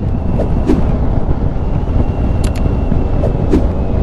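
Riding noise on a 2013 Triumph Tiger 800 at road speed: a steady rumble of wind on the microphone mixed with the bike's three-cylinder engine.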